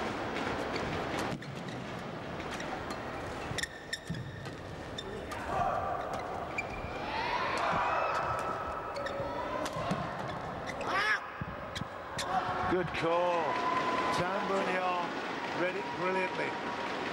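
Badminton rackets hitting a shuttlecock in a doubles rally, a string of sharp hits, followed by arena spectators shouting and yelling with rising and falling voices after the point ends.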